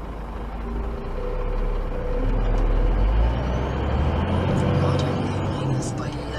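HGV's diesel engine heard from inside the cab as the lorry moves slowly: a steady deep rumble that grows louder in the middle, with a faint whine rising in pitch.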